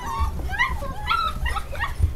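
English Cocker Spaniel puppies whimpering and yipping in a run of short, high squeaks, over a low rumble of handling.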